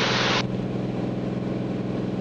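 Cirrus SR22's six-cylinder Continental engine and propeller at full takeoff power during the climb-out, a steady drone heard inside the cabin.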